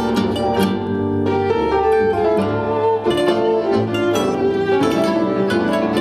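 Instrumental passage from a small acoustic band: a classical guitar is fingerpicked over sustained bowed violin and low accompanying notes, with no singing.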